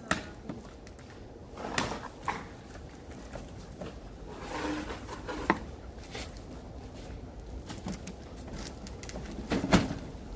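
Heavy black plastic tarpaulin liner being handled and unfolded on concrete: several sharp slaps and thumps as the folded sheet is moved and dropped, with rustling of the plastic in between. The loudest knocks come just after the start and near the end.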